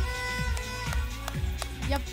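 Background music: a held chord over a low pulsing bass, with a few light percussive ticks.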